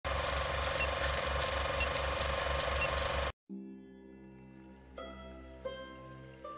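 Film projector clatter sound effect: a steady noisy whir with a fast, even rattle, about four beats a second, that cuts off suddenly a little over three seconds in. After a moment of silence, soft music with gentle plucked notes begins.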